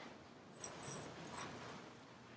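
Faint handling noise: a few light clinks and rustles from about half a second in, as cups and stir sticks are moved on the plastic-covered table.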